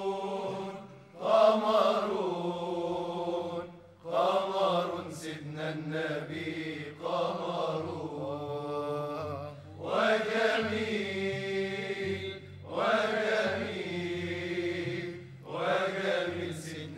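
Male voice singing Egyptian religious inshad: long, ornamented wordless phrases a few seconds each, with short breaths between them, over a steady low drone.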